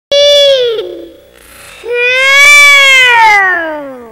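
A child's voice making two long, drawn-out calls. The first is short and falls in pitch; the second, about two seconds long, rises a little and then slides down.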